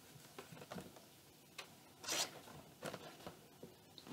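Paper card being handled and folded closed: faint scattered rustles and small clicks, with one brief, louder rustle about two seconds in.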